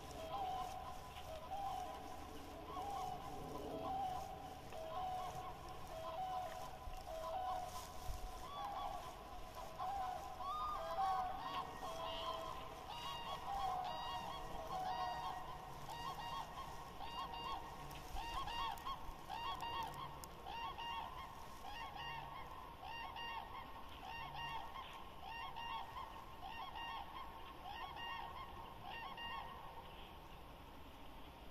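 An animal calling over and over, short calls repeated about twice a second, moving higher in pitch about halfway through.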